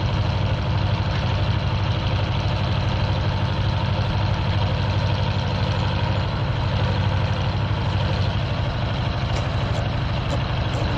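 A vehicle engine idling steadily and evenly close by, with a few faint ticks near the end.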